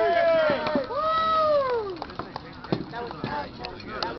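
Two long, drawn-out shouts in the first two seconds, each falling in pitch. They are followed by a few sharp knocks, the sound of weapons striking shields or each other, under scattered fainter voices.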